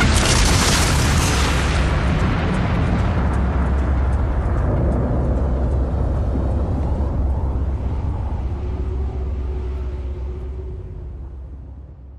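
A boom sound effect closing a hip-hop track: a sudden blast whose hiss dies away over the first few seconds, leaving a deep rumble that slowly fades out near the end.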